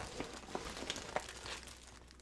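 Clear plastic zip-lock bags crinkling faintly as they are handled, a scatter of small crackles that thins out near the end.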